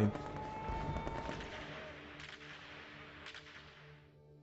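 Sound effects of wartime shelling and gunfire: a rumbling, crackling din with a thin whistling tone in the first second or so. It fades away, with a couple of sharp cracks later on.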